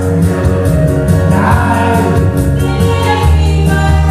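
A man and a woman singing a duet into handheld microphones over loud backing music with a steady bass.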